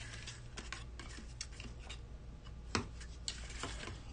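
Cardstock box blank being folded and creased along its score lines with a bone folder: soft paper rustling and scraping with scattered light ticks, and two sharper clicks near the end.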